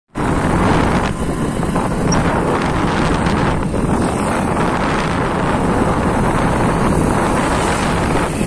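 Wind buffeting a phone's microphone on a moving motorcycle, with the bike's running engine and road noise underneath; a loud, steady rush.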